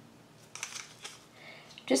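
A few faint clicks and rustles of a gloved hand handling a plastic cup of paint, with a spoken word starting near the end.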